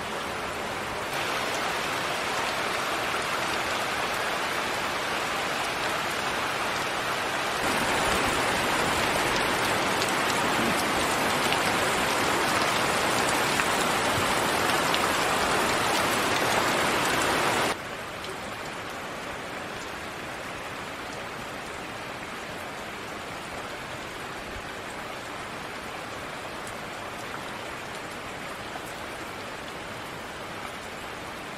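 Steady rainfall, an even hiss with no distinct drops standing out. It grows louder a few seconds in and drops abruptly in level a little past halfway.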